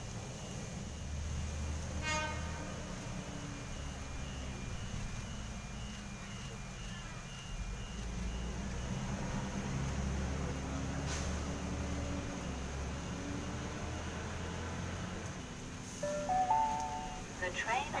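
Heavy rain with the rumble of a Sydney Trains S set electric train approaching and pulling into the platform, growing louder toward the end. A brief horn-like tone with several pitches sounds about two seconds in, and louder pitched tones come as the train arrives near the end.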